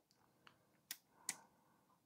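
Near silence broken by three faint clicks from a plastic phone-mount clamp as it is rotated by hand.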